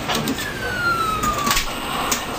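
Toy claw machine sounding a single falling electronic tone, lasting about a second, as the claw descends, with a few short clicks.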